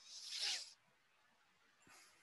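A short, noisy rustle lasting about half a second at the start, with a faint second one near the end, over low background hiss.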